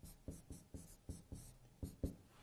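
Marker pen writing on a whiteboard: a quick run of faint, short scratchy strokes as a two-character word is written.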